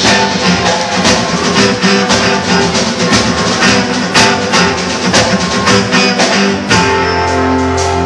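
Live instrumental band music: strummed acoustic guitar over a steady drum-and-cymbal beat. About seven seconds in the beat stops and sustained low notes ring on.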